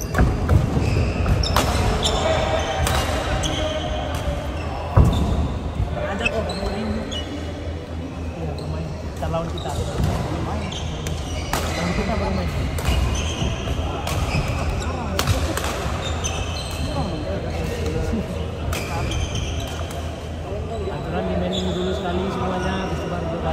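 Badminton rally: sharp racket hits on the shuttlecock at irregular intervals, with one especially loud hit about five seconds in, shoes squeaking on the wooden court floor between shots, and voices talking in the background.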